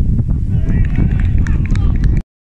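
Wind buffeting the microphone as a steady low rumble, with players shouting on the pitch from about half a second in.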